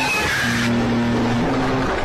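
A sound effect on the meme's audio: a burst of hiss with a squeal sliding down in pitch, lasting under a second, over a held low note, cutting into the background music.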